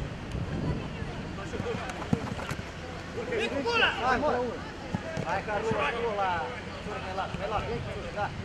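Minifootball players shouting to each other on the pitch during play, loudest about halfway through, with a couple of sharp ball kicks earlier on over a steady low rumble of outdoor noise.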